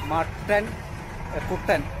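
A man's voice in two short snatches, over a steady low background rumble.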